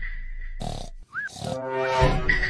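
A cartoon voice grunting and groaning, coming in during the second half, after a steady high tone fades out and two short noisy hits.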